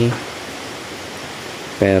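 A man's voice trails off just after the start and begins again near the end; between them, a steady hiss of background noise with no other distinct sound.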